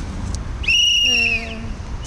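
A whistle blown in one long, steady, high blast of just under a second that starts sharply and falls away at the end, with a short murmur of a voice beneath it.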